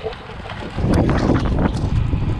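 Wind buffeting an action camera's microphone on a moving road bike, over the rumble of tyres rolling on a loose gravel road surface, with scattered small ticks; the noise grows louder about a second in.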